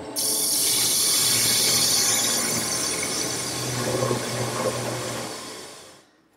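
Wood lathe with a turning tool cutting into a spinning wooden leg: a steady rushing hiss of the cut over the lathe's low hum, dying away near the end.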